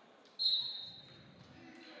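A referee's whistle: one short, high blast about half a second in, ringing on in the gym and fading over about a second.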